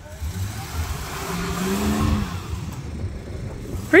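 A 4x4's engine revs up and back down about a second or two in, with a rushing noise over a steady low rumble.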